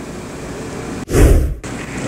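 Faint steady hiss, then about a second in a loud, short burst of noise, heaviest in the low end, that stops abruptly after about half a second.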